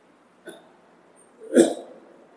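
A faint mouth click, then about a second and a half in a short, sharp throat or breath sound from a man close to the microphone, like a hiccup.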